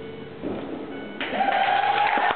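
Routine music ending on a held chord, then, about a second later, audience applause starting abruptly with a cheer over it.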